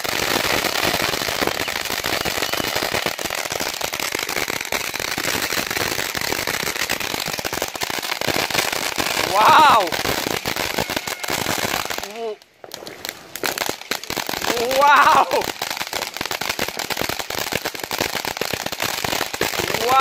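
Crackling ground fountain firework spraying sparks, a dense rapid crackle of tiny pops that breaks off for a moment a little past the middle. A person whoops loudly twice over it, about ten and fifteen seconds in.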